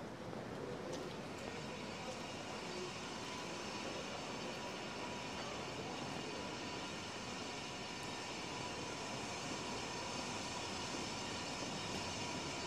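Steady city street ambience: a continuous hum of distant traffic, with faint steady high tones joining about a second in.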